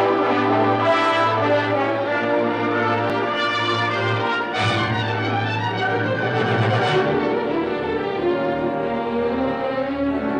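Orchestral film score playing held, swelling chords.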